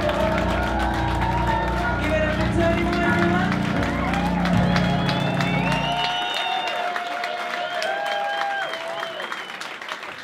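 Live band music with several voices singing and hands clapping. About six seconds in the bass drops out suddenly, leaving only voices that fade away.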